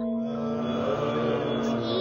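A low chanting chorus of voices comes in about a third of a second in, over a steady held tone in the music score.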